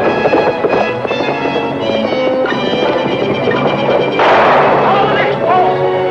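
Dramatic orchestral score with sustained strings and brass. About four seconds in, a sudden loud crash-like burst lasts about a second over the music.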